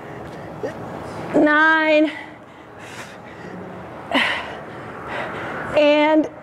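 A woman breathing hard through ab crunches: sharp breathy exhales, and two short effort sounds held on one steady pitch, the first about a second and a half in and the second right at the end.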